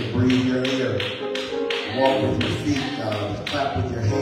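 Church music with a steady beat: sharp taps about three to four a second over held sung or played notes.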